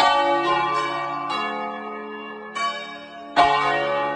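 The four largest bells of a ring cast by Crespi in 1753, tuned D-flat, F, A-flat and D-flat, swung full-circle by hand in the Italian 'distesa' style, heard close up from inside the belfry. The clappers strike about five times in turn, each stroke ringing on over the next, and the loudest comes near the end.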